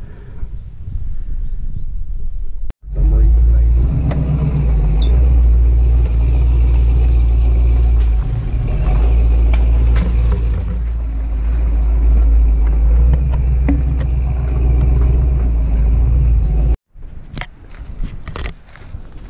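After a quieter opening, a truck driving along a rough, overgrown trail starts abruptly, heard from a camera mounted on the outside of the vehicle: a loud, steady low rumble of engine, tyres and wind with occasional small knocks. It cuts off suddenly near the end.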